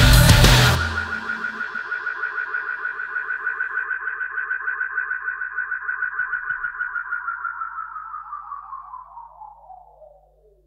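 Outro of a remixed dark electro/EBM track. The full loud mix stops about a second in, leaving a fast-pulsing electronic tone that slowly falls in pitch and fades away over a faint low drone.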